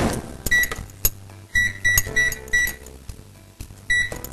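Microwave oven keypad beeping as the buttons are pressed to set the cooking time: about six short, high beeps, irregularly spaced, after a knock at the start. A low hum sets in about a second and a half in.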